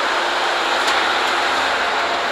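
Steady outdoor background noise, an even rush like street traffic, with no single event standing out.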